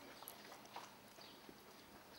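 Near silence: faint outdoor background hiss with a few weak, scattered clicks.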